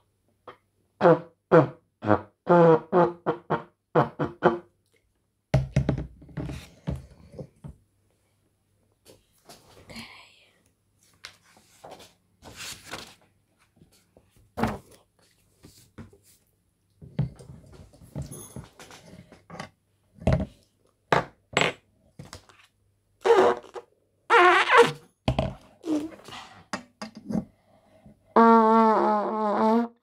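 Trumpet played by a beginner: a quick run of short, blatty notes in the first few seconds, then scattered knocks and handling noises. A few more short blasts come later, and near the end a longer note with a wavering pitch.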